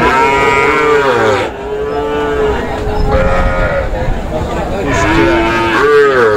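Sahiwal bull calves mooing, several long drawn-out calls one after another with little gap between them.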